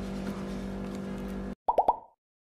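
A steady low hum with no speech, then a sudden cut to silence and a quick run of about four short pitched pops from a logo-animation sound effect.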